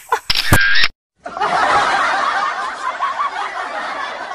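A short, loud edited-in sound effect, then a moment of dead silence, then a dubbed-in laughter effect: many overlapping laughs that keep going.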